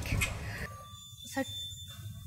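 A woman's voice at the start, a short word about halfway through, and otherwise a quieter pause with only faint steady background tones.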